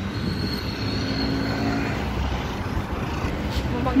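Steady city street traffic noise, with a faint thin high whine for the first couple of seconds.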